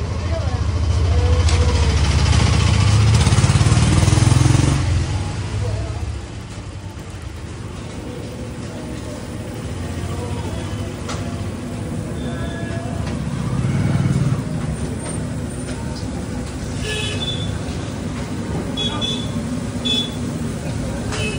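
Busy street noise: a passing motor vehicle's low rumble swells and fades over the first six seconds, with a smaller one about two-thirds of the way through, over a steady traffic background and voices.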